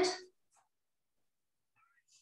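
The last syllable of a woman's spoken question, rising in pitch, then near silence: room tone.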